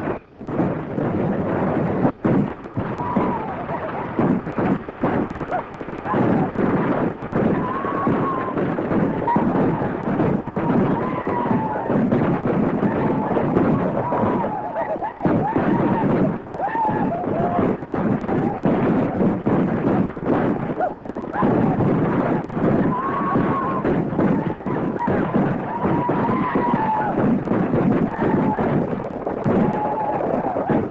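Battle sound effects on an early-1930s film soundtrack: repeated gunshots and blasts over a continuous rumbling din, with yelling voices rising and falling throughout.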